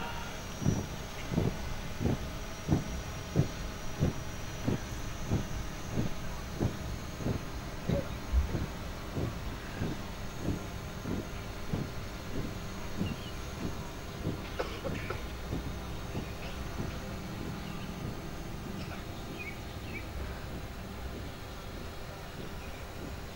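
A steady beat of low thuds in marching time, about three every two seconds, as a troop marches in formation. The beat grows fainter after about twelve seconds and dies away soon after.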